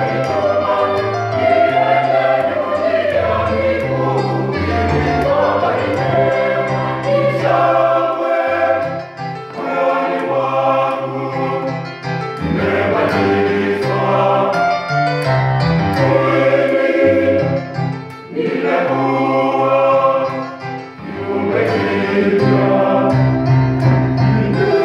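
Church choir of men's and women's voices singing together, in phrases with short breaks between them, over a steady low bass part.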